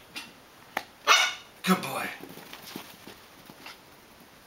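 A Prague Ratter puppy gives two short, sharp barks on the "speak" command, about a second in and again half a second later.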